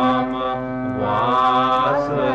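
Indian devotional music in a Carnatic style: a wavering sung melody over a steady held drone. The melody thins out about half a second in and picks up again after a second.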